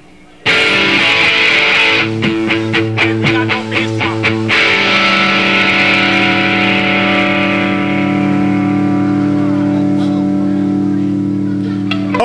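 Live rock band on electric guitar, bass and drums: after a brief hush they strike a loud chord, play a quick run of rapid hits, then hold one long chord that rings out and slowly fades.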